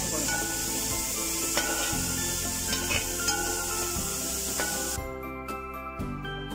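Vegetables sizzling as they stir-fry in a pan, with a few sharp taps and scrapes of a perforated metal spatula against the pan. The sizzle cuts off near the end.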